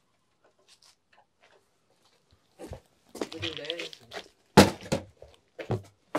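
Nearly quiet at first, then in the second half a few sharp knocks mixed with brief bits of voice.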